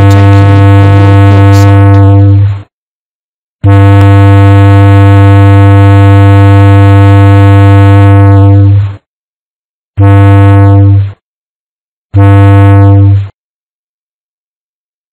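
Ship's whistle sounding the overtaking signal of two prolonged blasts followed by two short blasts, meaning "I intend to overtake you on your port side". It is a loud, steady, low horn note: the first long blast ends a couple of seconds in, the second lasts about five seconds, then come two blasts of about a second each.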